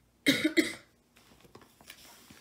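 A person coughing twice in quick succession, about a quarter second in.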